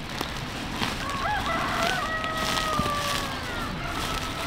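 A rooster crowing once: one long call that starts about a second in with a quick rise and fall, then holds and trails slowly downward until near the end.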